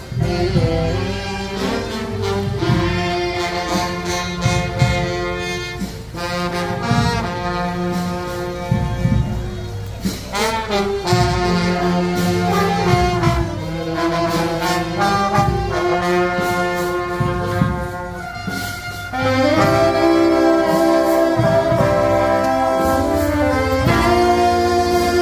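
Marching band of saxophones, trombones and trumpets playing a tune in held notes, with a clear rise in loudness about 19 seconds in.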